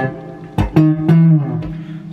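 Electric Telecaster-style guitar played dry, its delay effect just switched off: three single plucked notes in quick succession starting about half a second in, the last one ringing for about half a second.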